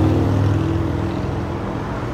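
A motor vehicle's engine passing on the road, a low rumble that fades away over the two seconds.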